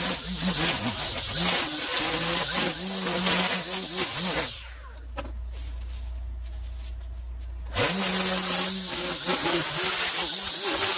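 Gas string trimmer cutting tall overgrown grass at high throttle, its engine pitch rising and falling as the throttle is worked. About four and a half seconds in it drops to idle for about three seconds, then revs back up and resumes cutting.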